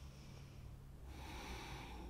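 Faint breathing through the nose, a soft hiss that swells about a second in, over a steady low hum.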